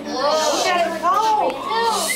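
Children's voices overlapping, exclaiming and calling out with rising and falling pitch as a group.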